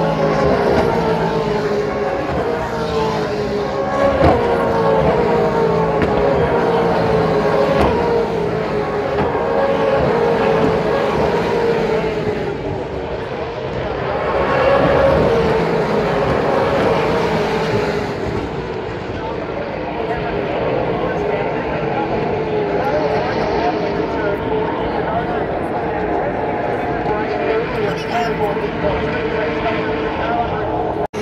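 V8 Supercars race cars' V8 engines running at racing speed past the crowd, their pitch sliding down several times as cars go by, with a swell of engine noise about halfway through.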